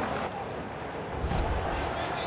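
Steady background noise of a football match broadcast, with one short thump a little past halfway.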